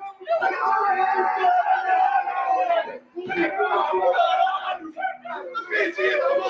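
A small group of men shouting and yelling together in goal celebration, with one long held shout for most of the first three seconds, then broken yelling.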